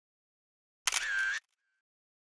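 Camera-shutter sound effect on a logo animation: one sharp click and a burst about half a second long, a little under a second in, with a faint short echo after it.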